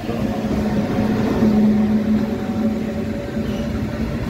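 A locomotive hauling a freight train of open wagons passes on the adjacent track with a steady low drone that swells about a second and a half in.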